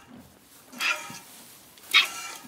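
Squirts of milk hitting a pail in hand milking: two short splashy squirts, one about a second in and a sharper one near the end.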